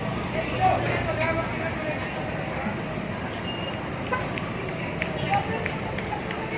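Busy street ambience: people talking over steady traffic noise, with a few short knocks in the second half.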